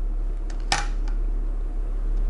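Steady low electrical hum, with a single sharp click about two-thirds of a second in.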